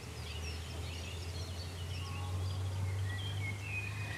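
Outdoor garden ambience: several small birds chirping and warbling in quick, overlapping short notes over a steady low rumble.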